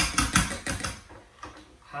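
A quick run of sharp clicks and knocks in the first second: an electric hand mixer's metal beaters clacking against a stainless steel pot as they are lifted out of freshly whipped mashed potatoes. The sound then fades to faint clatter.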